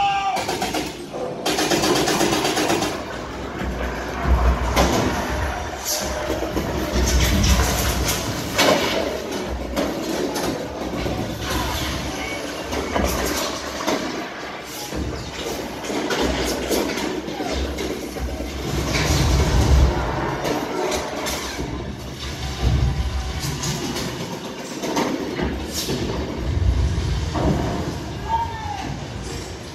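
A battle diorama's soundtrack playing through the exhibit speakers: dramatic music with deep rumbling booms of simulated shellfire several times over.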